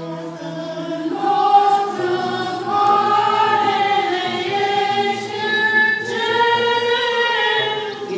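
Orthodox liturgical choir singing a hymn in long held notes, several voices moving slowly together; a lower held note gives way to the higher voices about a second in.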